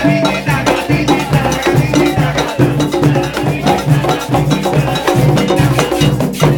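Live Latin percussion played on hand-held panderos (skin frame drums), struck in a fast, steady rhythm, with a low drum tone landing about twice a second.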